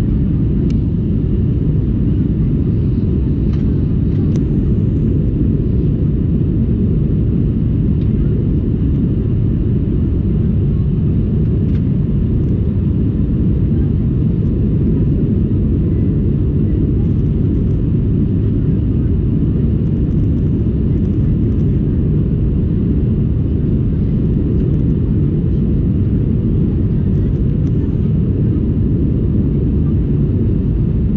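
Steady low rumble of an Airbus A320 in climb, heard inside the passenger cabin: engine drone and airflow noise, unchanging throughout, with a few faint ticks above it.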